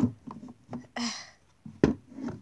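Two sharp knocks from a plastic model horse being handled against a wooden toy stable, one at the start and a louder one near the end, with a breathy 'ugh' in between.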